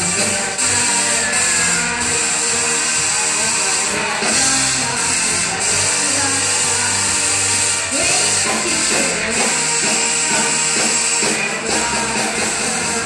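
A live rock band playing a song, with drum kit, guitars and keyboard.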